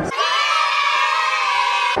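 A sustained high-pitched scream of several voices at once, thin with no low end, that cuts in and cuts off abruptly.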